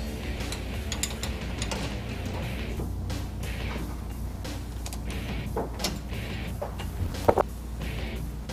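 Light clicks and clinks of hand work on a truck's rear axle vent tube and its fitting, a wrench going onto the fitting, with a sharp click near the end. Background music plays underneath.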